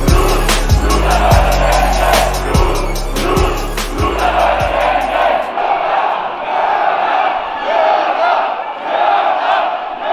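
Music with a heavy, regular bass-drum beat plays over the noise of a shouting crowd, then cuts off about halfway through, leaving the crowd shouting on its own.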